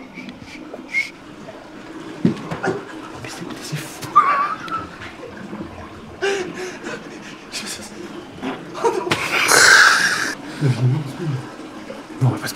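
Hushed whispering voices with scattered small knocks and rustles, and a loud rushing burst of noise near the end.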